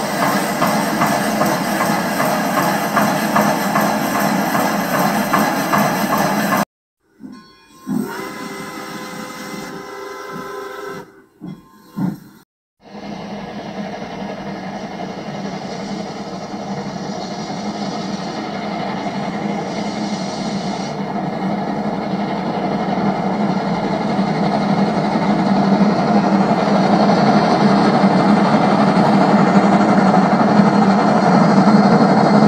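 Steam locomotive sound effects: a dense machine noise cuts off suddenly, a short whistle-like tone sounds in the break, then a steady hiss of steam with a low rumble grows slowly louder.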